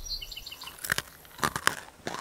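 Short crunching, chewing clicks: a brief cluster in the middle and another just before the end.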